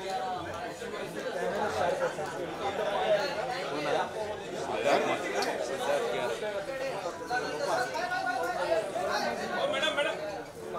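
Crowd chatter: many voices talking and calling out over one another, with no single voice standing out.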